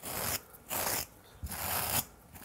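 Steel wire brush scrubbed across a thick cotton terry towel: three short scratchy strokes, each under half a second, with brief pauses between.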